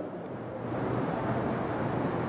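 Steady hiss of room noise with no voice, growing slightly louder about half a second in.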